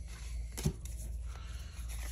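Pokémon trading cards being handled and slid against one another, a faint rustle with a soft tap a little past halfway, over a steady low hum.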